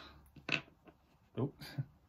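Faint handling sounds and small clicks of a plastic action figure as its helmet head is worked off, with a brief spoken 'oh'.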